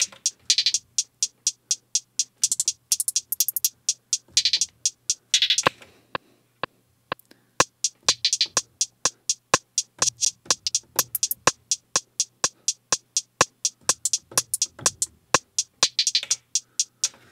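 Hi-hat pattern played from an Akai MPC One drum machine, ticking about four times a second, with several short, fast rolls of rapid repeated hits laid in by note repeat.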